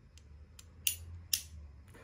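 Two sharp little clicks about half a second apart from the pop-out front machine-gun gadgets of two die-cast Corgi Aston Martin DB5 toy cars being worked, over a steady low room hum.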